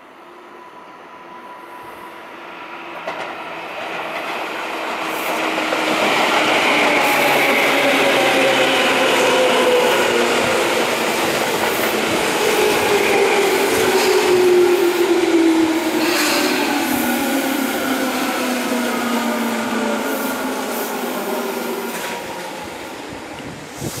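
Tobu 10030 series electric train running in and passing close while slowing for a station stop. Its traction motor whine falls steadily in pitch, and the wheels clack over rail joints. It grows loud over the first several seconds and eases off near the end.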